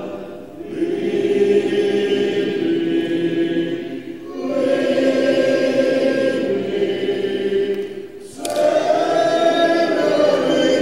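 Church congregation singing a hymn a cappella, in long held phrases with a short break for breath about every four seconds.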